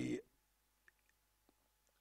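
Two faint computer mouse clicks, about a second in and half a second apart.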